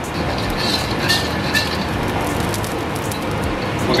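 Gas stove burner running on high heat under a wok with a ladle of oil heating in it: a steady rushing noise, with a few faint ticks.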